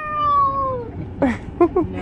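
A high-pitched voice gives one long call that falls slowly in pitch. It is followed by a few short spoken syllables.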